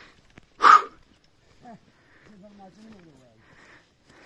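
A man breathing hard as he hikes uphill, with one loud, sharp breath about a second in and softer puffs after. Near the middle comes a brief low, wavering vocal sound.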